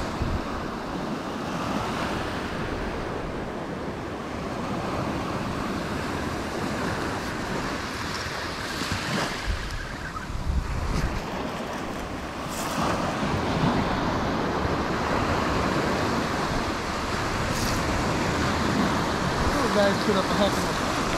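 Small surf breaking and washing up a shell beach: a steady rush of water that swells and eases, with wind buffeting the microphone.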